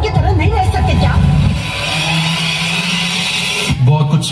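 Dance-routine soundtrack over stage speakers: a voice for about the first second and a half, then a steady noisy swell over a low hum that cuts off suddenly just before the end.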